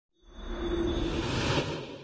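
Whoosh sound effect with a held synthesised tone, swelling for about a second and a half and then fading away: an intro logo sting.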